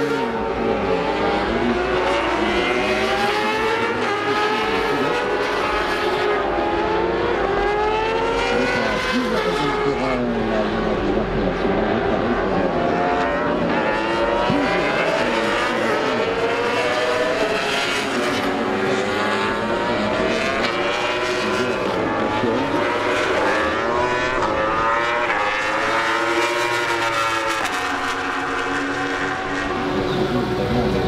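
Racing motorcycles on the Bol d'Or endurance circuit at night, several engines at once, their notes rising and falling in pitch as the bikes accelerate, shift and brake through the corners and pass by.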